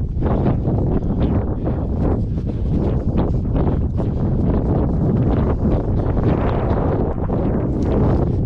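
Wind buffeting the microphone in a steady low rumble. Scattered short scuffs and scrapes come from hands and climbing shoes moving on rock.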